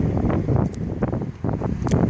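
Wind rumbling on the microphone, with a couple of brief knocks.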